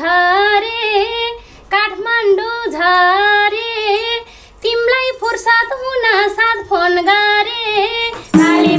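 A woman singing a Nepali folk song solo and unaccompanied, in long held phrases with slides and wavers on the notes. The phrases are broken by two short breath pauses, about a second and a half in and again past the four-second mark.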